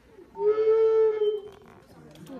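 A single bowed violin note held steady for about a second, starting about half a second in.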